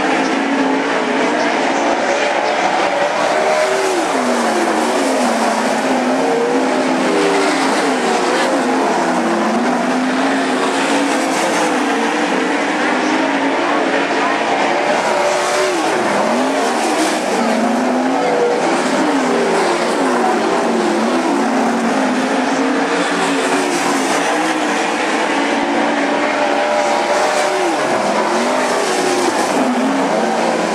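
Several 410 sprint cars' 410 cubic-inch V8 engines running hard on a dirt oval. Their pitch rises and falls again and again as the cars lap the track, with several engines overlapping.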